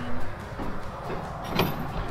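A travel trailer's metal entry door being handled as it is closed up, with one sharp click about one and a half seconds in, over a low rumble.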